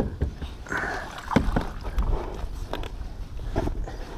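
Scattered sharp knocks and clicks of gear being handled aboard a plastic kayak, over water lapping at the hull.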